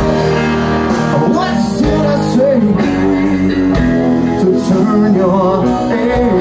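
A live rock band playing, with electric guitar, drums, bass and piano, at a steady loud level.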